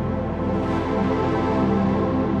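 Soft ambient meditation music: steady, held synthesizer-like tones over a constant low drone.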